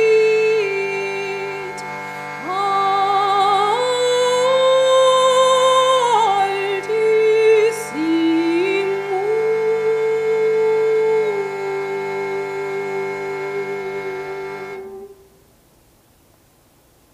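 A woman singing a slow chant melody with vibrato over a steady reed drone from a hand-pumped shruti box. The voice ends on a long held note, and voice and drone stop together near the end.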